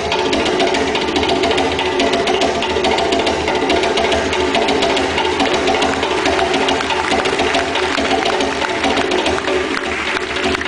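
Live hand drumming: a djembe played with both hands in a fast, unbroken stream of strokes, in a rhythm that imitates a moving train.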